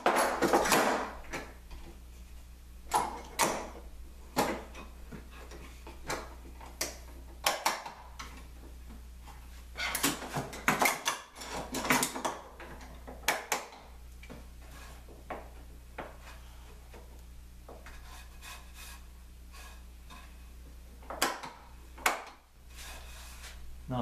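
Metal hold-down clamps and clamp posts being set into the holes of a workbench top and adjusted: scattered clicks, knocks and clatter, in clusters about a second in, around three to four seconds, from about ten to fourteen seconds and again near twenty-one seconds, with quieter stretches between.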